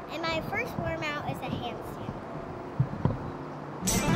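A young girl's voice for the first second or so, then a quieter stretch with a couple of short soft thumps, and music starting right at the end.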